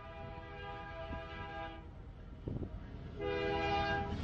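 Diesel locomotive's multi-note air horn on an approaching double-stack freight train. One blast ends about two seconds in, and a louder one starts near the end, over the train's low rumble as it comes closer.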